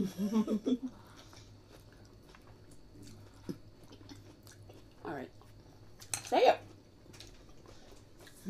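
A woman laughing briefly, then faint chewing and mouth sounds of eating close to the microphone. A short vocal sound about five seconds in and a louder one just after six interrupt the chewing.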